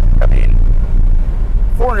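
C8 Corvette Z51's mid-mounted 6.2-litre V8 pulling under load, heard loud and low from the open-top cockpit just after a hard acceleration.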